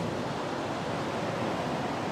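Steady rushing background noise, even throughout, with no distinct sounds in it.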